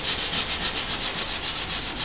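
A steady rasping, rubbing noise with a rapid, even pulse.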